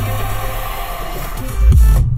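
Electronic music playing through the 2022 Mazda 3's 12-speaker Bose audio system, heard inside the car's cabin. A steady deep bass note drops away under a second in, leaving a quieter break, then heavy bass hits with falling pitch come in near the end.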